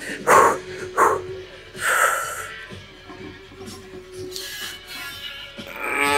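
A man breathing hard and grunting through a heavy set of barbell back squats. Sharp exhales come in the first two seconds, a long breath follows, and near the end a loud groan falls in pitch as he works a rep.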